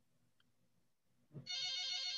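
Near silence, then about a second and a half in a soft thump followed by a steady electronic tone with many overtones, like a phone ringtone or alert beep.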